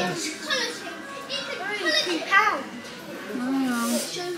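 Young children's voices chattering and calling out, with a loud, high rising call about two seconds in.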